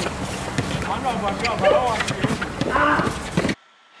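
Sound of an outdoor basketball game: players' voices calling out over a noisy background, with scattered short knocks and scuffs from play on the hard court. It cuts off abruptly about three and a half seconds in.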